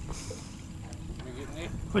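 Low, steady wind rumble on the microphone with faint talk in the background.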